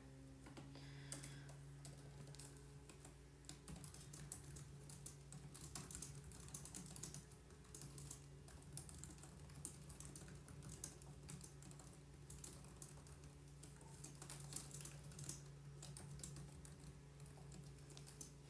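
Typing on a computer keyboard: rapid, irregular key clicks, faint, over a steady low hum.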